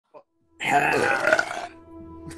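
A person burping: one drawn-out burp about a second long, starting about half a second in, with music playing underneath.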